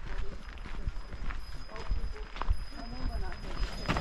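Irregular footsteps of hikers walking on a trail, with people talking faintly and indistinctly in the background.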